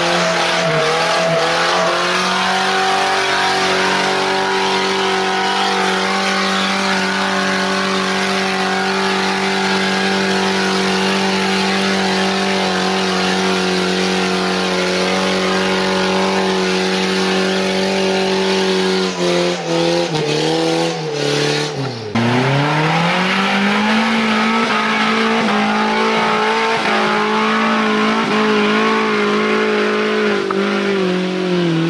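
A 4x4's engine held at high revs as it pushes through deep mud, a steady high engine note. About twenty seconds in the note sags and falters, then climbs back and holds high again.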